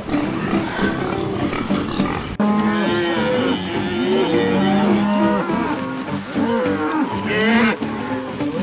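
Pig barn noise for the first two seconds or so, then an abrupt switch to several cattle mooing over one another in short, rising and falling calls.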